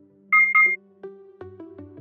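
A quick double electronic beep, two short high two-tone pips, over soft background music of plucked notes. It is the workout timer's signal marking the end of an interval.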